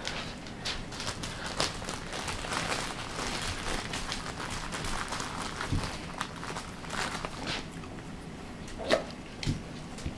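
Several dogs' claws clicking and shuffling on a vinyl floor in scattered light ticks, with a soft thump about six seconds in.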